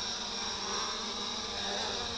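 MJX Bugs 2W quadcopter's brushless motors and propellers buzzing steadily as it hovers a few feet above the ground, coming in to land.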